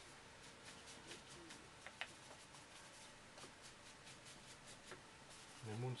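Near silence of a small room, with faint scratchy strokes of a paintbrush on watercolour paper and a single small click about two seconds in.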